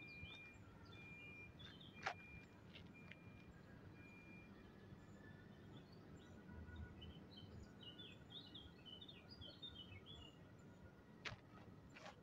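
Near silence: faint outdoor ambience with small birds chirping and whistling, busiest in the second half, and a single short knock about two seconds in.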